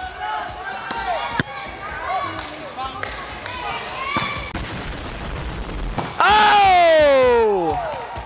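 Gym chatter with the sharp smack of a volleyball spike about four seconds in, then a loud shout sliding down in pitch for about a second and a half.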